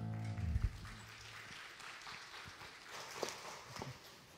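The last held chord of a church worship band (electric guitars, bass) fades out within the first half-second, ending in a low thump. Then come quiet footsteps and scattered soft knocks on a wooden stage.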